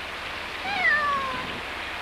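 A domestic cat meows once: a single call, falling in pitch, lasting under a second.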